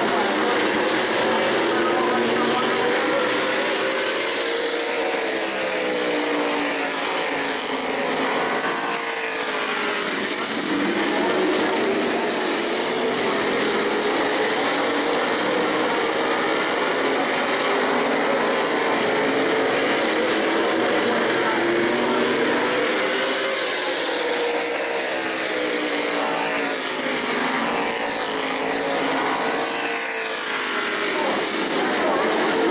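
A pack of modified stock cars racing flat out on an oval, their V8 engines running in a steady, loud chorus whose pitch rises and falls as they lap the track.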